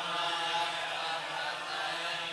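A congregation chanting a line of a Sanskrit verse together in unison, as in line-by-line call-and-response recitation. The chant starts just before and fades out near the end.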